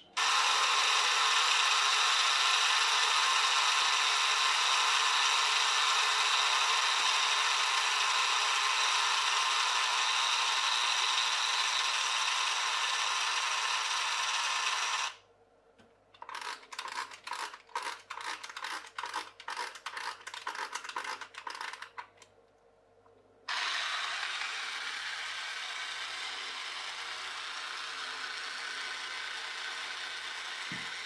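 Clockwork motor of a toy RIB's outboard running, its gears whirring steadily with the propeller spinning in air; the gears have just been sprayed with lubricant. About halfway through it gives way to a run of clicks, roughly three or four a second, as the key winds the spring. Near the end the motor runs steadily again, more softly, driving the boat in water.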